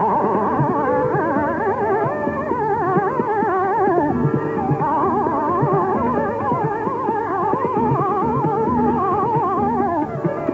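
Hindustani classical tarana in raag Tilak Kamod: fast, ornamented melodic runs weaving up and down over a steady drone.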